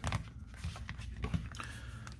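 Faint handling sounds of a thin plastic phone case being fitted onto a Google Pixel 4a: scattered light clicks and soft rubbing.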